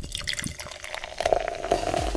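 A carbonated soft drink fizzing and pouring, with a steady crackle of bursting bubbles and a short pour note a little past halfway, played as the Coca-Cola logo sound effect.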